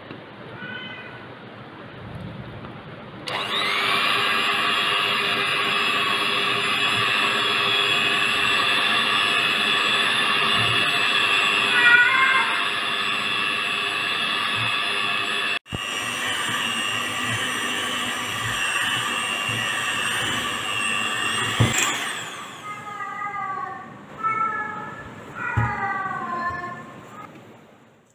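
Handheld electric mixer beating thick fudge mixture in a steel bowl: a steady high motor whine that starts a few seconds in, cuts out for an instant midway, and stops near the end. A cat meows near the start, once over the mixer, and several times after the mixer stops.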